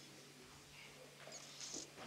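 Near silence: room tone with a steady low hum, and a few faint, short, high-pitched squeaks about a second and a half in.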